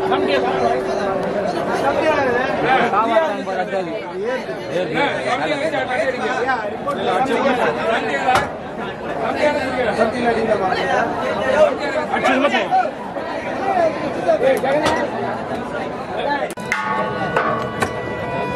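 Many men talking at once, overlapping chatter, with a few sharp knocks. Near the end a held, high-pitched note comes in.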